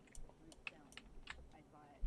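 Faint, irregular clicks of computer keys being tapped, scattered through near silence.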